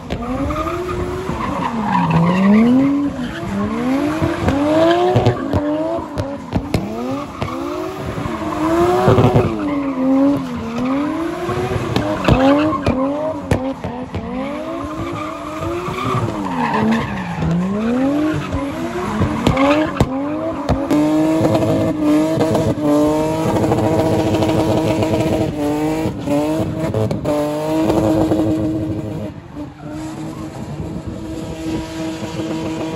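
Drift car engine revving up and down over and over as the car slides, with tyres squealing and spinning. In the last third the engine is held at a steady high pitch with short dips.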